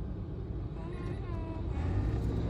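Steady low rumble of a running car heard from inside the cabin, with a faint voice briefly about halfway through.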